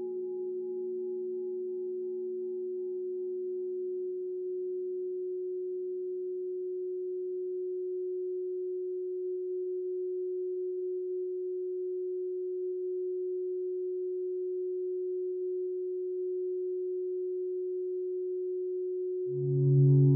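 A steady pure tone holding one mid pitch, the sound-healing 'frequency' tone, with fainter lower and higher tones dying away over the first several seconds. About a second before the end, louder, deeper tones swell in.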